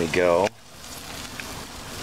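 Stuffed chicken breasts sizzling on a gas grill: a faint, steady hiss.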